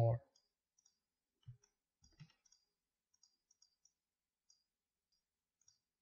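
Faint, scattered clicks of a computer mouse and keyboard, a dozen or so short high ticks spread across several seconds, with two soft low thumps about one and a half and two seconds in.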